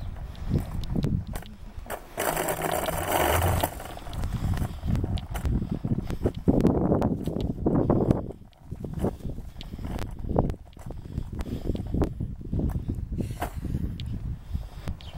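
Footsteps of a person walking on a concrete sidewalk while carrying the recording phone, an even run of soft thumps with handling noise. A rushing noise comes in about two seconds in and lasts over a second.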